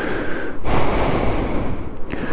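A long, heavy breath out close to a helmet microphone, a rushing hiss with no voice in it, swelling about half a second in, as the rider gets off a parked motorcycle.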